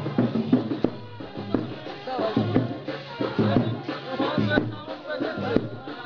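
Procession percussion keeping a steady beat, with a chanting voice over a horn loudspeaker joining about two seconds in.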